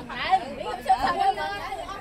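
Several children talking and calling out over one another in high voices.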